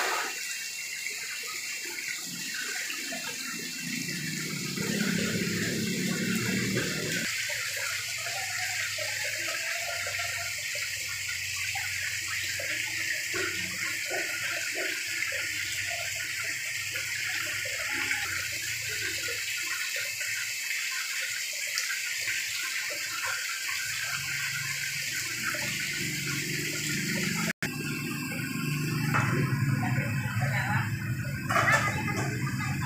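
Water splashing steadily into a live-fish holding tank, an even rushing hiss, with a louder splash at the very start.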